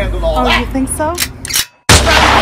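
A person's voice making short gliding vocal sounds, with a few sharp clicks, cutting off to a brief silence near the end.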